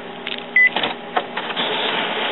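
A single short beep from an Epson WorkForce WF-3640 printer's touchscreen control panel about half a second in, as the nozzle check is started. The printer's mechanism then starts up with a few clicks and a rising whir as it begins printing the nozzle check pattern.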